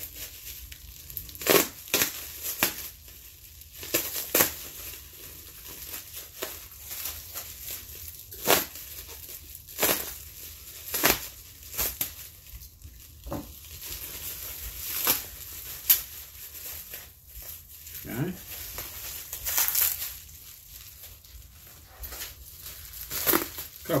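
Bubble wrap crinkling as packing tape is cut off it with a box cutter, in irregular sharp crackles and rustles.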